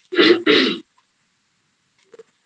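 A man clearing his throat: two quick, loud rasps back to back within the first second.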